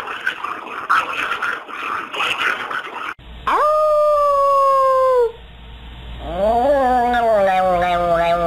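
Small dog, a chihuahua, howling: two long drawn-out howls, the first steady and slowly falling, the second lower and wavering. They follow a few seconds of indistinct noise.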